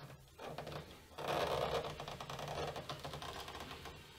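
Fingers rubbing and pressing along a binding strip and masking tape on a guitar neck, an uneven scratchy rustle with small clicks that grows louder about a second in.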